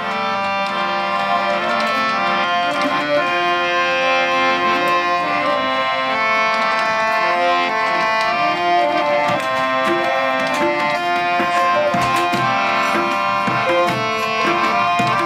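Harmonium holding sustained chords, with tabla strokes and a plucked string instrument, playing a Nepali-Appalachian fusion piece without singing.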